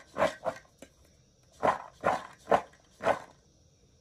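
A dog barking: two quick barks at the start, then a run of four barks about half a second apart.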